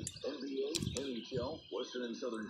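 A voice talking quietly throughout, with a brief click a little before the middle.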